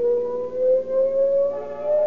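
Police siren sound effect winding up: one long tone rising slowly and steadily in pitch. Brass music comes in near the end.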